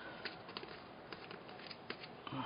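Faint handling noise with a few light clicks as hands fit the lid onto a small candy jar filled with candies.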